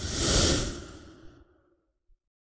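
Whoosh transition sound effect: a rushing swell of noise with a low rumble under it, building to a peak about half a second in and fading away by about a second and a half.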